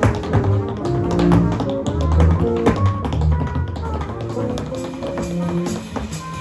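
Tap-dance shoes tapping out rhythms over improvised jazz, with double bass notes underneath.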